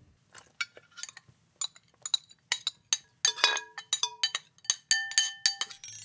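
Light, irregular clinks and taps on dishware, several leaving a brief ringing tone, coming thicker in the second half.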